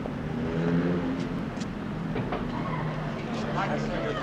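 City street sound: passing car traffic with indistinct voices.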